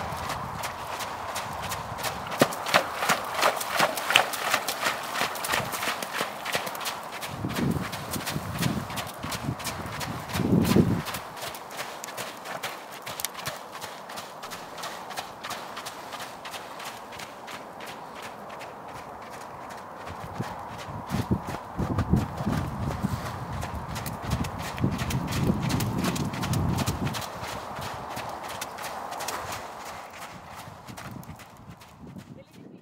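Hoofbeats of a ridden horse trotting on wet, muddy arena footing: a steady, regular run of dull clip-clops. A few louder low rumbles come about a third of the way in and again past two-thirds.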